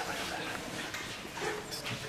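Indistinct talk from people in the room, with no clear words.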